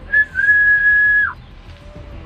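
A whistle: a brief high note, then one long steady high note held for about a second that drops in pitch as it ends.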